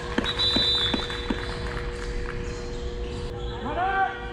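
A goalkeeper's gloved hands clapping about five times in the first second and a half, over the steady hum of an indoor arena. A thin high tone sounds briefly with the first claps, and near the end a voice calls out, rising in pitch.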